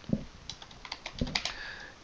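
Typing on a computer keyboard: a run of irregularly spaced key clicks.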